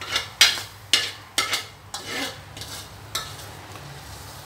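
Metal spatula scraping and stirring shrimp-paste chili paste around an aluminium wok as it stir-fries: about eight quick scrapes, the loudest in the first two seconds and lighter after.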